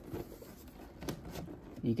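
A large cardboard box rubbing and scraping against hands as it is turned over, with a few faint ticks about a second in.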